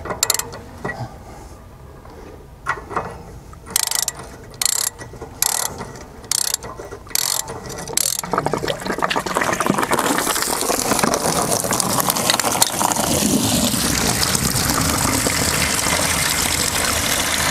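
A socket ratchet clicks in short bursts as the anode rod of an RV water heater is unscrewed. From about eight seconds in, a steady rush of water gushes out of the tank through the open anode port.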